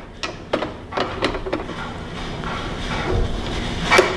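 Tall plate stack of a BioTek BioStack microplate stacker being set onto its base: several sharp clicks and rattles in the first second and a half, a sliding rub, then one sharp click near the end as it locks into place.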